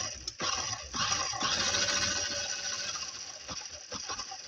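Plastic gears and wheels of a LEGO car spinning with a whirring rattle and a few clicks, slowly dying away as they run down.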